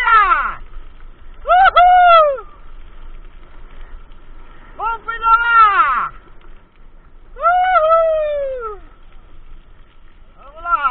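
A person's voice giving four long, loud wordless hoots, each about a second long, rising slightly and then falling in pitch.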